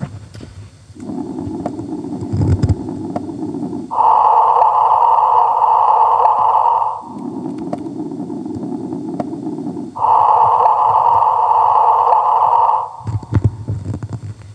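Sonified recording of the first detected gravitational waves (GW150914, the merger of two black holes), played from a laptop over the hall's loudspeakers: a hissing band at a low pitch for about three seconds, then the same at a higher, louder pitch, and the low-then-high pair heard twice.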